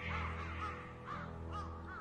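Crows cawing repeatedly, many short calls overlapping, over low sustained background music.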